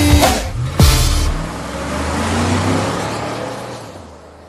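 Ending of a Greek pop song: the beat and backing play their last bars, closing on a final hit about a second in. A washy noise tail follows and fades away.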